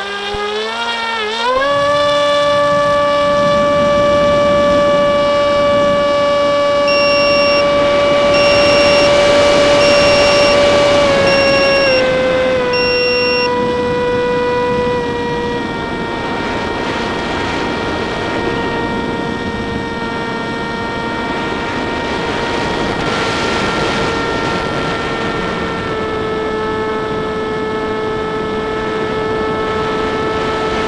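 Motor and propeller of a radio-controlled aircraft, heard from the onboard camera. It whines up in pitch as the throttle opens, holds a steady high tone while climbing, then settles lower in a few steps. A row of five short high beeps sounds partway through.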